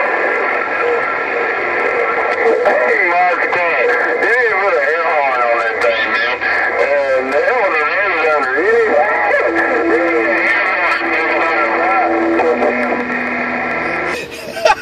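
Incoming long-distance skip signal from a President HR2510 radio's speaker: several steady whistling carrier tones with garbled, wavering voices over them, a lower steady tone joining about two-thirds in. The transmission cuts off abruptly at the end.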